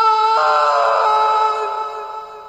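Background music from the anime's score: one long held note, joined about half a second in by a cluster of extra tones that fade away near the end.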